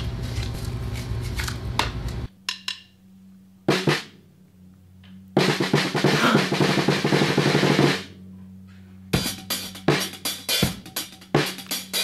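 Drum kit played by a one-handed drummer using a prosthetic 'paw' and two sticks. A few separate hits are followed by a fast roll of rapid strokes lasting about two and a half seconds in the middle, then scattered hits near the end.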